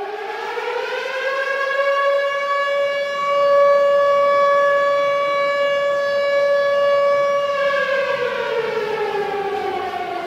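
A siren sounds: its pitch rises, holds one steady tone for about six seconds, then falls over the last two seconds.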